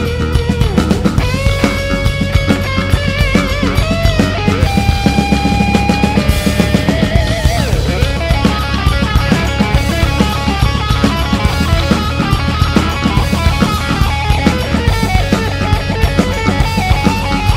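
Live rock band playing an instrumental passage: an electric guitar lead over drum kit. Long held, bending notes with vibrato come in the first half, then quicker runs of notes.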